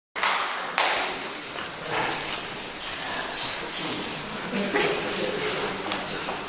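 A man's voice speaking in a reverberant hall, with a few knocks.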